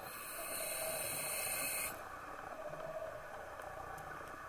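A scuba diver breathing in through the regulator: a hiss of about two seconds at the start, then the low background of the water.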